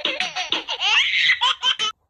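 High-pitched laughter: a quick run of short giggles, rising into a squeal about a second in, then more giggles that cut off suddenly near the end.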